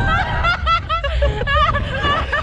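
Young women laughing in quick, high-pitched giggles, several a second, while on a slingshot thrill ride, over a steady low rumble of wind noise.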